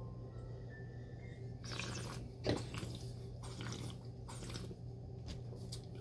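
A person sipping red wine from a glass and working it in the mouth, with faint wet slurping sounds and a short hissy slurp about two seconds in. A low steady hum runs underneath.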